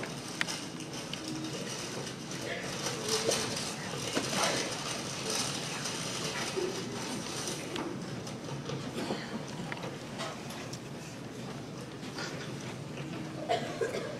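Indistinct voices of performers talking on stage, heard from the audience in a large hall over a steady background hiss.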